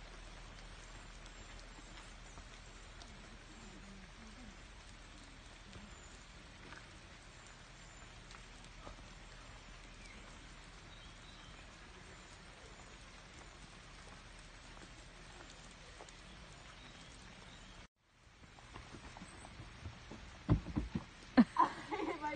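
Light rain falling steadily in woodland, a faint even patter. It cuts off suddenly near the end, and a few sharp thumps follow.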